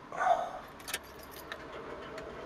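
A few light clicks and clinks of small hard objects being handled, bunched together about a second in, after a short low vocal sound near the start.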